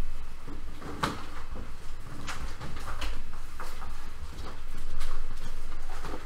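Pages of a Bible being turned and handled: a few soft paper rustles and light taps over a low steady hum.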